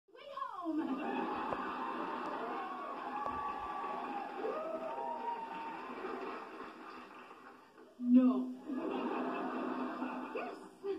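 Sitcom dialogue from a television's speakers, heard across a small room: characters' voices that dip briefly, then start again loudly about eight seconds in.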